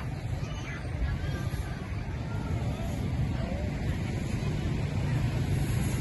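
Outdoor urban ambience: a steady low rumble of traffic with faint voices of people here and there, growing slightly louder over the few seconds.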